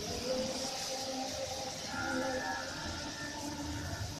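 Heavy rain falling, a steady even hiss heard through an open window, with faint drawn-out tones in the background.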